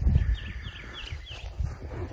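A small bird calling a quick run of about five short, falling chirps in the first second and a half, over low thuds of footsteps in grass.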